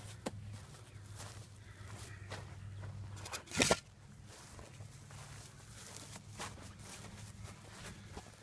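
Footsteps and scuffing on dry grass and dirt, with one louder scuffing thump about three and a half seconds in, over a steady low hum.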